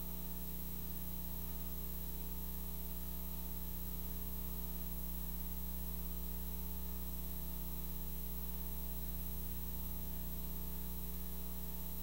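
Steady electrical mains hum with a buzz of higher overtones and a constant hiss on the soundtrack of an old video recording.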